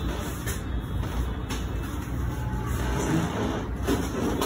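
Steady low rumble, with faint background music beating about once a second. No joint crack stands out.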